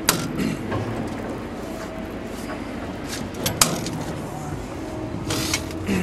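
Metal engine-compartment access door of a Komatsu PC1250 excavator being unlatched and opened: a sharp latch click at the start, another click a few seconds later, and a short rushing scrape near the end.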